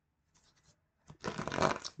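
A deck of tarot cards being shuffled by hand. A few faint card ticks come first, then about a second in a quick, dense run of card flicks and rustling.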